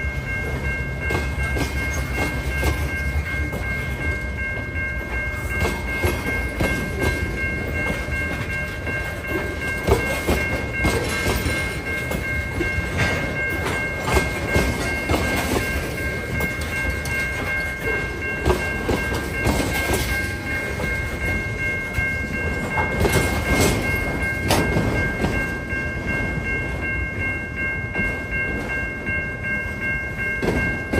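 Freight train of tank cars and autorack cars rolling past at low speed, its wheels clacking irregularly over rail joints. A steady high tone runs underneath throughout.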